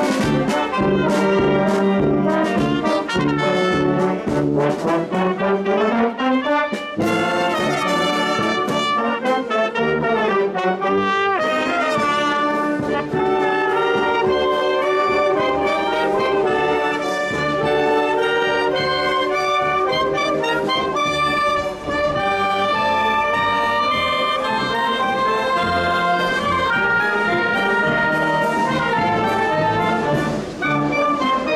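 A marching band of brass, woodwinds and drums playing in the street: tuba, trombones and trumpets with clarinets and saxophones over bass drum and cymbal beats. Steady drum strikes carry the opening seconds, a rising run comes about five to seven seconds in, and then a sustained melody runs on.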